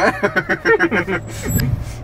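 Mahindra Thar's diesel engine running with a steady low hum, heard from inside the cabin while driving, with a deeper rumble swelling briefly about three-quarters of the way in.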